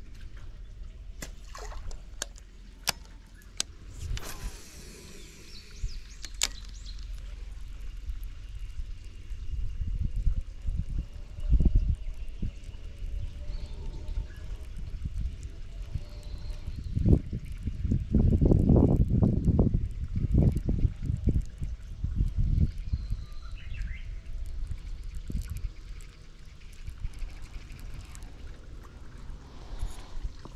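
Outdoor ambience with irregular low wind rumble on the microphone, gusting loudest a little past the middle. There are a few sharp clicks and knocks in the first several seconds.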